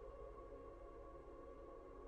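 Faint ambient background music: soft sustained tones held steady.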